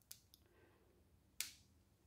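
A short sharp click about one and a half seconds in as the cooled wax seal pops free of the brass wax stamp head, after a faint tick at the start; otherwise near silence.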